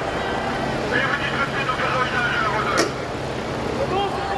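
Raised crowd voices and shouts over the steady hum of a heavy police vehicle's engine, with a single sharp crack just before three seconds in.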